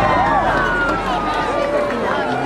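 A voice with drawn-out, gliding pitch sounding over a fireworks display, with faint crackles from the fireworks.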